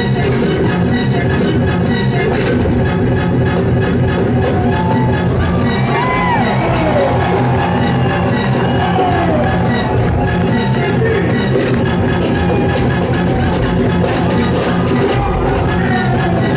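Live DJ set on two turntables and a mixer, played loud through a club sound system: a steady, driving electronic beat with pitch-bending sweeps through the middle, where records are being scratched.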